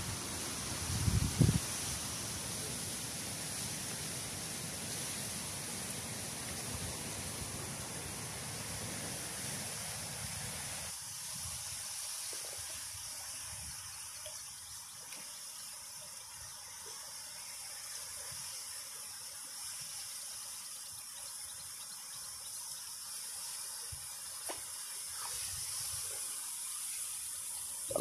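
Steady hiss of running water in a reed-lined canal, with a thump about a second in. Low wind rumble on the microphone drops away about a third of the way through.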